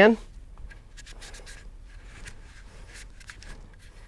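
Rag rubbing and scrubbing inside an AR-15 upper receiver: a quiet, irregular scratchy rubbing with small ticks of cloth and fingers against the metal.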